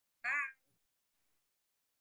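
A single short, high-pitched call about a quarter second in, its pitch rising and then falling.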